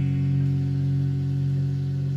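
Electric guitar chord held and ringing on, slowly fading, with no new notes struck.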